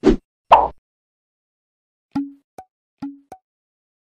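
Cartoon pop sound effects: two quick loud pops in the first second, then two pairs of short, lighter clicks about two and three seconds in.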